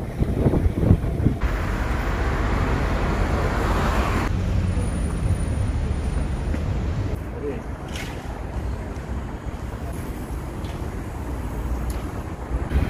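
Outdoor street ambience: low wind rumble on the microphone with traffic noise, changing abruptly a few times, about a second and a half in, around four seconds and around seven seconds.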